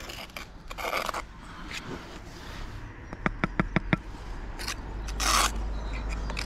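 Steel brick trowel and pointing tool scraping wet mortar against brick while a joint is dressed: a short scrape about a second in, a quick run of about six light taps a little past the middle, and another short scrape near the end.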